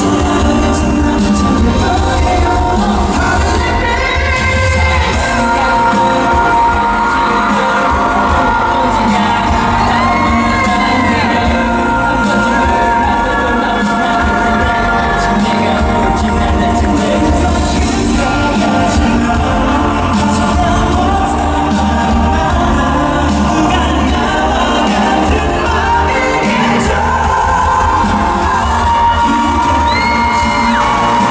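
Male K-pop vocal group singing live into microphones over an amplified pop backing track with a steady bass beat, heard through an arena PA from the audience.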